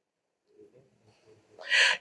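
A pause in a man's speech: faint low murmurs in the middle, then his voice starts again near the end with a breathy, hissing onset.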